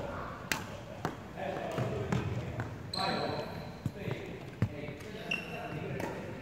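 Sneakers on a wooden court floor during a badminton footwork drill: scattered sharp footfalls and knocks, with short high squeaks of the shoe soles about three seconds in and again near the end, in a reverberant hall.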